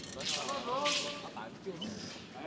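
Two quick swishes of a wushu broadsword cutting through the air, the second the louder, with high-pitched shouted cheers from spectators.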